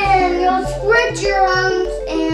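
A young child's voice over background music with a repeating bass note.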